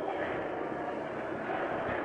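Steady background hiss of an old live recording, an even noise with no voice in it.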